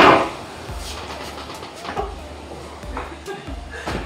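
A man's short laugh right at the start, then low room noise with a few faint knocks.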